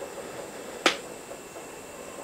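A single sharp click about a second in, over a steady background hiss with a faint high whine.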